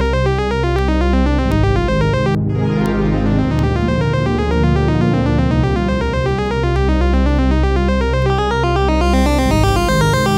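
Synthesizer loop in C natural minor: a fast sixteenth-note arpeggio of random scale notes over sustained chords and low notes. About two and a half seconds in the highs cut out suddenly, then gradually open back up as the synth's filter is turned up.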